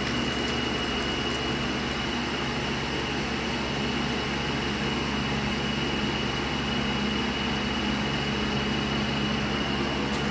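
Hot oil sizzling steadily in a frying pan as an egg fries crisp, over a steady low mechanical hum with a thin high whine.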